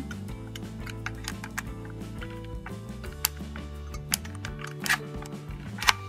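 Soft background music with steady low tones, over several sharp clicks from a hot glue gun and ribbon being handled, the loudest click near the end.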